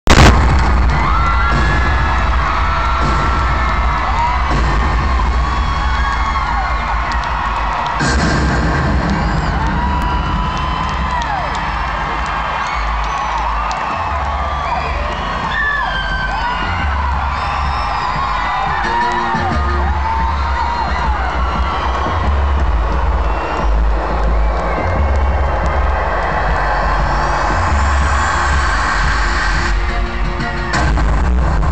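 Concert crowd screaming and cheering over a loud, bass-heavy music intro, with a heavy thud of bass pulsing underneath. There is a sharp loud hit right at the start.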